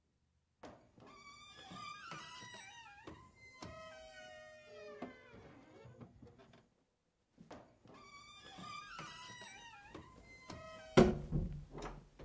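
Background music: a slow melodic phrase with sliding notes, heard twice with a short pause between. Near the end a loud, sharp thud as a wooden door is shut.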